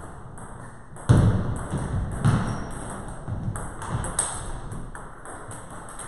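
Table tennis rally: a plastic ball clicking off the bats and bouncing on the table in quick succession. There is a louder thud about a second in and another just after two seconds.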